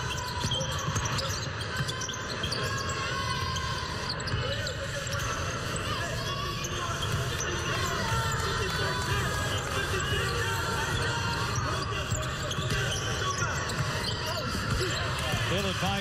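A basketball being dribbled on a hardwood court during live play, over a steady murmur of crowd chatter.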